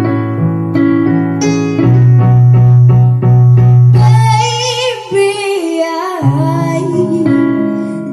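Electronic keyboard playing sustained piano-sound chords, with a held low bass note in the middle of the first half; about four seconds in, a child's voice comes in singing over it with vibrato.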